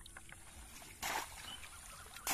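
A short splash of shallow pond water about a second in, as a bamboo polo fish trap is moved and lifted through it, with small ticks and drips around it.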